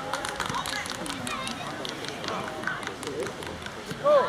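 Players and spectators at an outdoor youth football match shouting and calling over one another during a goalmouth scramble, with scattered short, sharp clicks.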